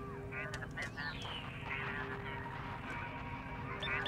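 Intercepted Imperial probe droid signal coming over the base's comm speaker: a garbled electronic transmission of quick warbling chatter, with a falling whistle about a second in, over a steady electronic hum.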